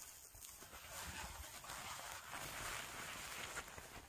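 Shiny snakeskin-print fabric crumpled and worked in the hands, a soft, steady crinkly rustle that builds from about half a second in. The fabric is unlined, so this is the cloth's own sound.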